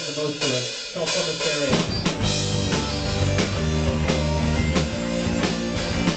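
Live rock band starting a song. The drums strike a few times in the first two seconds, then the full band comes in with drums and electric guitars at a steady beat.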